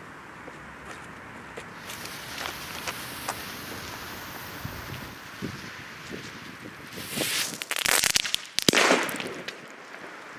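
A Fireevent The King 2.0 firecracker (a German D-Böller with a pre-burner): its fuse hisses for several seconds, then the pre-burner fizzes loudly about seven seconds in, and a sharp bang follows near the end and trails off.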